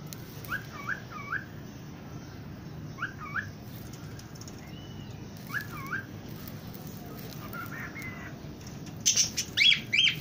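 Pet parakeets chirping: short rising whistled notes, mostly in pairs, every few seconds, then a quick run of much louder, sharper calls about a second before the end.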